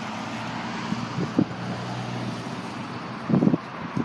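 Steady outdoor background noise of wind on the microphone over a low traffic hum, with a brief low bump about a second and a half in and a louder one near the end.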